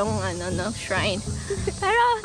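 A singing voice in a song laid over the footage, held notes wavering with vibrato, over a steady faint hiss.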